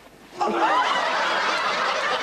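Audience laughter from many people, breaking out suddenly about half a second in and carrying on loudly.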